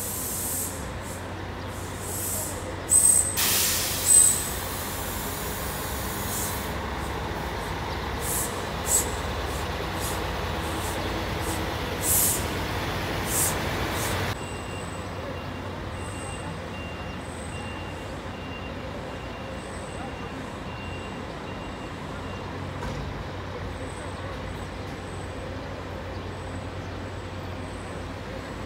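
Diesel coach engines idling with a steady low hum, and a loud air-brake hiss about three seconds in, followed by several shorter hisses over the next ten seconds. Voices murmur in the background.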